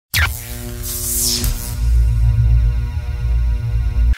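Short intro music sting with a heavy, sustained bass and held tones, with a high swooshing sweep about a second in.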